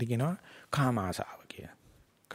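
Speech only: a man speaking in two short phrases with a brief pause between them.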